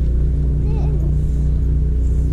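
A steady low mechanical hum made of several unchanging pitches, with a faint voice briefly about a second in.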